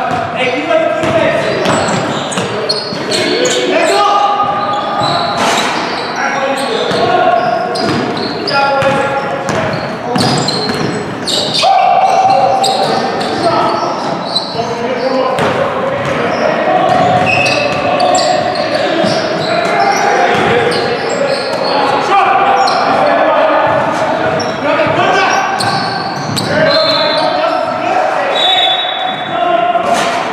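A basketball bouncing on a hardwood gym floor during a game, with players' voices calling out, all echoing in a large gym.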